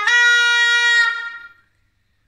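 A small woodwind with a flared bell, played solo: one long, bright note held and then fading out about a second and a half in, at the end of a phrase.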